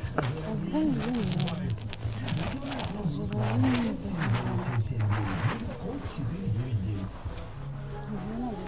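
Indistinct voices talking in the background over a low steady hum, with a series of sharp clicks and rustles in the first few seconds.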